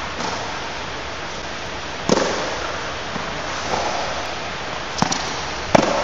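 Tennis ball struck by children's rackets and bouncing on the court, several sharp pops each with a short echo under the air dome, the loudest about two seconds in and just before the end, over a steady hiss.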